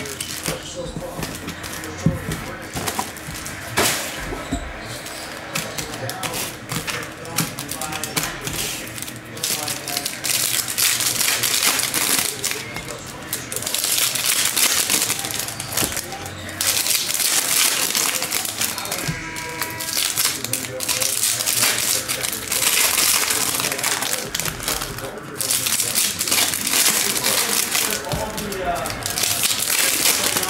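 Foil trading-card pack wrappers being torn open and crinkled, with cards shuffled and tapped as they are sorted, making a long run of crackling and short clicks.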